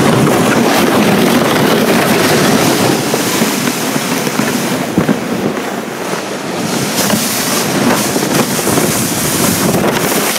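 A sled sliding fast down a snowy slope: a loud, continuous scraping rush of runners or base over snow, mixed with wind buffeting the microphone, with a couple of sharp bumps along the way.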